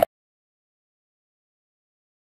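Silence: the sound track drops out completely right at the start and stays empty.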